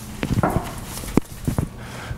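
Chalk tapping and knocking on a blackboard in a string of sharp, separate clicks as a formula is written.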